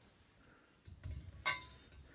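Copper pipe being handled and fitted into place: some low handling noise, then a single sharp metallic clink with a short ring about one and a half seconds in.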